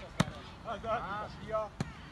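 Two sharp slaps of hands striking a volleyball, about a second and a half apart, the first the louder, with players' voices calling in the background.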